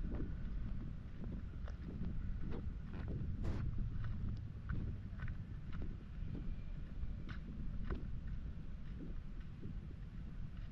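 Footsteps on a dirt path through grass, one or two steps a second, over a low rumble of wind on the microphone.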